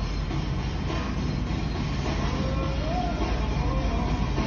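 Ultimate Fire Link slot machine sounding short electronic tones as its fireball bonus round is triggered, over a steady rumble of casino-floor noise.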